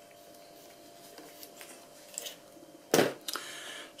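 Faint handling noise as a wing nut is tightened by hand on a plastic antenna mount bracket. About three seconds in comes a short, sharp knock of the assembly being handled, followed by brief quieter rubbing.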